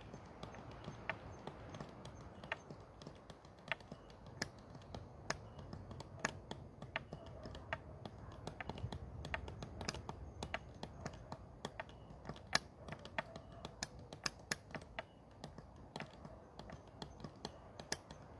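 Irregular sharp clicks or ticks, a few a second and uneven in strength, over a faint low background noise.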